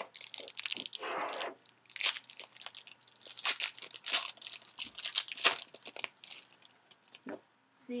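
Plastic wrapping on a trading-card box crinkling and tearing in repeated crackly bursts as the box is opened and the cards handled.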